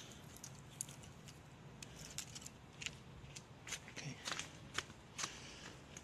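Faint, scattered clicks and light cracks of small dry twigs being picked up and handled.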